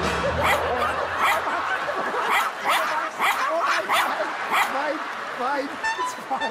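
Small terrier yapping in a rapid string of high, short barks, about three a second, over background music that fades out about two seconds in.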